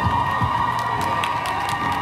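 Outdoor audience cheering and clapping, with children's voices among the cheers, over a steady high tone.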